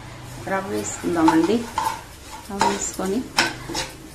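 Metal spoon stirring semolina in a metal pan, with a few sharp clinks of the spoon against the pan in the second half. A woman's voice speaks over it.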